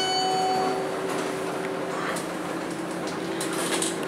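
Traction elevator car travelling down, a steady hum with even ride noise inside the car. A steady electronic beep that started just before ends under a second in.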